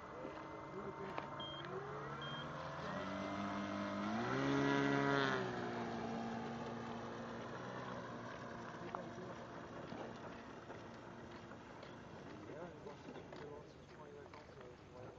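Electric motor and propeller of an RC aerobatic model plane: the whine rises in pitch as the throttle opens, peaks loudest around five seconds in, then drops back and fades as the plane moves off.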